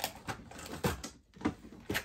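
Several sharp clicks and knocks of objects being handled and moved on a desk while someone looks for a calculator.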